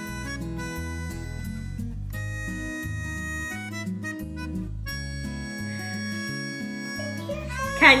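Background music of held, reedy notes over a low line that changes every half second to a second.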